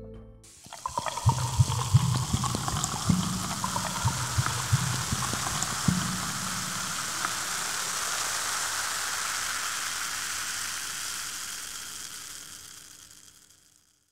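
Sparkling water poured, with glugging splashes for the first few seconds, then a steady fizz of bubbles that fades out near the end.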